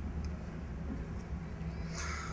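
Low, steady background hum and faint room noise, with no distinct events.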